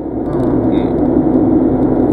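Car cabin noise while driving: a steady low drone of road and engine noise heard from inside the car.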